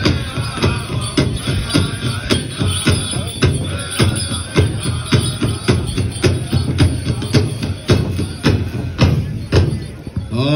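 Pow wow drum group playing a side step song: the big drum struck in a steady beat with the singers' voices over it. The drumming stops just before the end, as the song finishes.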